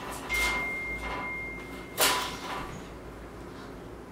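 Soft scuffs and a sharper knock about two seconds in, from handling a dog on a steel exam table during a stethoscope check, with a faint steady high tone over the first couple of seconds.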